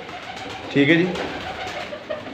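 Domestic pigeons cooing, with one short low call a little under a second in.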